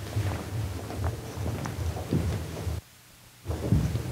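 Low rumbling thumps and rustles picked up by the microphone as the speaker moves, with a brief drop to near silence about three quarters of the way through.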